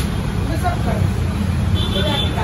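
Restaurant room noise: a steady low rumble with faint voices in the background.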